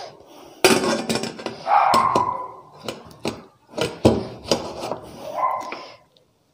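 Stainless steel lid of a 3-litre pressure cooker being fitted onto its pot: a string of sharp metal clinks and knocks, with short scraping stretches as the lid is worked and turned into place.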